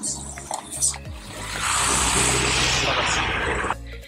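Water splashing and rushing in a shallow roadside channel as hands work in it. It swells up about a second in, runs steadily for about two and a half seconds, then cuts off suddenly, over background music.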